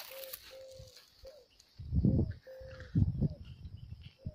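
Short animal calls, each held on one steady pitch and repeated irregularly, some bending down at the end. Two loud low rumbles come about two and three seconds in.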